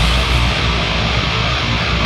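A goregrind band playing live: heavy distorted guitars, bass guitar and drums in a dense, steady wall of sound, with no vocals.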